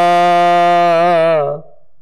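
A man's voice chanting Gurbani scripture holds one long, steady note at the end of a line, then breaks off about one and a half seconds in.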